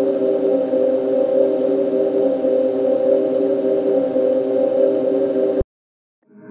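A dark ambient atmosphere loop sample in E minor: a steady, sustained chord held over a bed of hiss, cutting off abruptly near the end.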